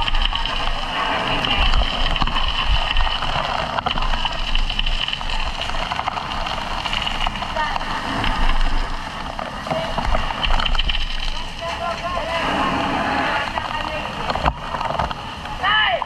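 Fire hose nozzle spraying a jet of water, a steady hiss, with people shouting over it throughout. A single shout rises and falls near the end.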